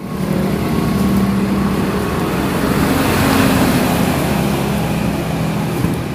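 Street traffic noise: a motor vehicle engine running steadily, with a constant hum under a wide noisy wash.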